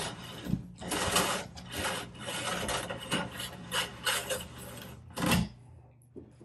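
An insulated yellow hot wire being pulled out through the conduit from an outlet box, its insulation rasping and rubbing along the conduit in a series of uneven pulls, with a louder scrape about five seconds in.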